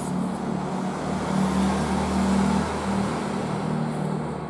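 A motor vehicle's engine running with a steady low hum.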